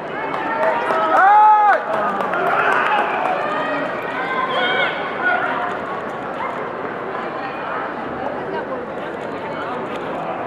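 A karateka's loud shouted kiai with an attack about a second in, one rising-then-falling cry, over a steady din of many overlapping voices from the arena crowd and coaches.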